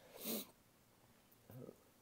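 A man's short, hissy breath in, lasting about half a second, followed by near silence with a faint brief sound near the end.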